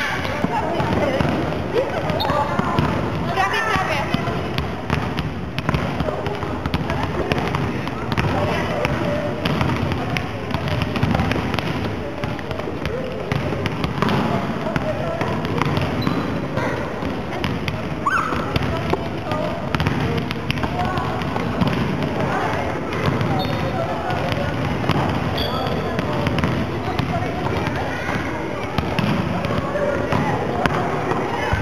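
Busy, echoing sports-hall din of volleyballs being bounced and struck again and again, under a constant hubbub of children's voices.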